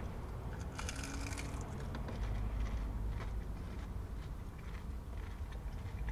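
Biting into and chewing a crunchy beer-battered fried fish fillet, with faint crackly crunches that are densest about a second in, over a low steady rumble.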